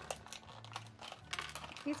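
Small plastic clicks and light rustling as a plastic Hatchimals egg capsule is handled and pried open by hand, a few faint clicks scattered through.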